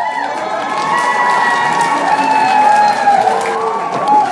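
Crowd of school students cheering and shouting, with some clapping mixed in.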